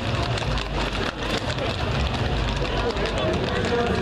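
Hooves of many horses clopping on an asphalt street in a dense, irregular stream of clicks, with indistinct crowd voices underneath.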